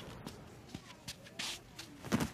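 Faint cartoon sound effects of a person sitting down in a padded gaming chair: soft shuffling with a few light clicks and a brief rustle about one and a half seconds in.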